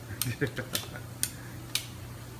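A series of sharp, light clicks about two a second, made by hand work on the aluminium pump assembly, over a steady low hum.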